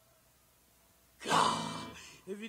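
About a second of near silence, then a singer's loud, breathy sigh that fades out, between sung phrases of a recorded song.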